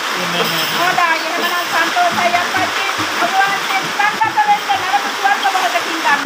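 A woman speaking rapidly in a high-pitched voice, over a steady hiss of background noise.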